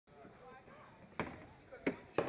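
Plastic security-screening bin knocking twice on a stainless-steel bin table as it is pushed along, about a second in and again near the end, over faint background voices.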